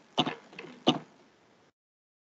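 A person clearing their throat twice in short bursts, heard over a video-call audio feed.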